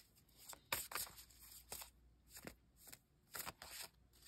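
Tarot deck being shuffled by hand: faint, irregular flicks and rustles of cards.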